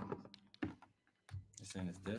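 Scattered light clicks and knocks of hands handling and adjusting a malfunctioning camera mount that is not centering itself. A faint voice murmurs near the end.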